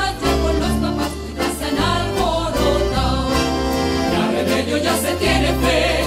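Live folk ensemble of strummed acoustic guitars playing a lively dance tune, with a group of voices singing along.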